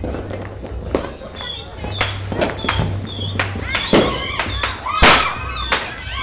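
Firecrackers and fireworks exploding in a rapid, irregular string of sharp bangs, the loudest about five seconds in.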